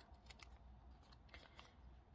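Scissors snipping through a folded paper coffee filter: several faint, short cuts.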